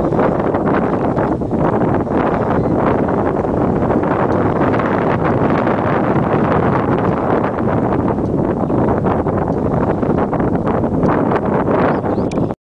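Loud, continuous wind noise buffeting the camera microphone, a dense low rumble with no break.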